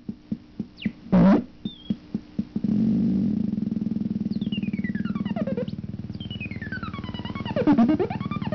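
Homemade optical synthesizer with LFO and low-pass filter: short blips and a couple of quick pitch sweeps, then, about three seconds in, a sustained buzzy tone pulsing rapidly, with its pitch gliding down and back up as hands move over the light-sensing box.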